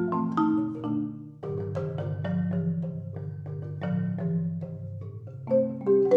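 Solo marimba played with four mallets. The piece moves from struck accented notes into a quieter stretch of sustained, rolled low notes, then returns to loud accents near the end.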